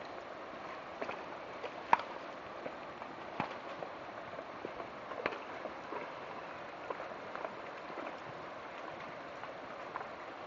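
Shallow creek water running over rocks, a steady rushing, with scattered sharp ticks and taps through it, the sharpest about two seconds in.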